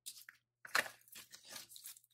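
Paper and packaging rustling and crinkling as the kit's contents are handled, in a quick irregular run of short, scratchy crackles.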